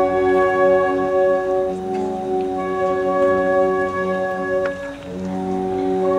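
Wind band playing slow, sustained brass-led chords, the notes held and changing every second or two, dipping briefly about five seconds in.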